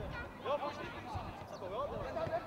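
High-pitched children's voices calling out among young football players, with some dull low thumps underneath.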